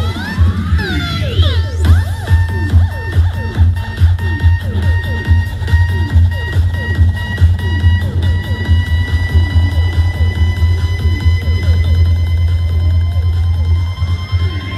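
Electronic dance music with heavy, loud bass played through a Panasonic SA-AK67 mini hi-fi system and its subwoofer speakers as a bass test. A sweep rises in pitch in the first couple of seconds, and another starts building near the end.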